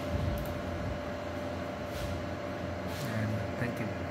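Steady room hum with a constant mid-pitched electrical tone over background noise; a faint voice murmurs briefly about three seconds in.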